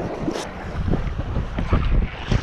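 Wind buffeting the microphone in uneven gusts, with water swishing around legs wading in shallow surf.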